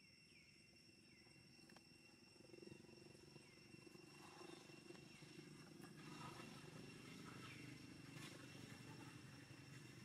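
Near silence: faint forest ambience with a steady high insect drone, a few faint chirps, and a low rumble that swells from about a third of the way in.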